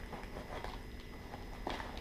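Soft rustling and light clicks of hands rummaging through the contents of a fabric first aid pouch, pulling out plastic saline ampoules, with a slightly louder rustle near the end.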